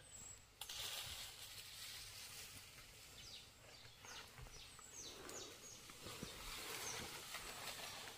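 Faint forest ambience: a bird repeating short, high, downward-sweeping calls several times in the second half, over a soft hiss and rustling of brush and dry leaves.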